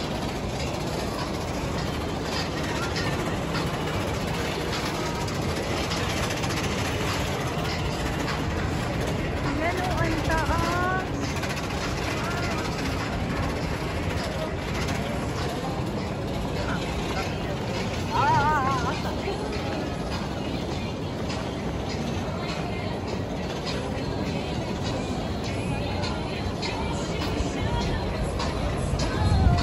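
Amusement-park ambience: a steady din of crowd voices and park music, with a steel roller coaster train running on its track.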